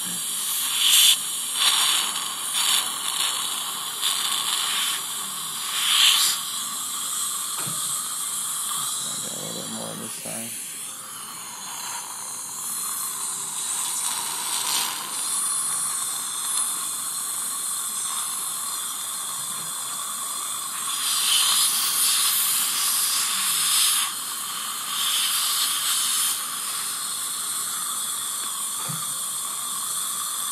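SweFlex saliva ejector drawing suction in a patient's mouth: a steady hiss with louder slurping surges every few seconds as it takes in air and fluid. The reviewer finds its suction weak.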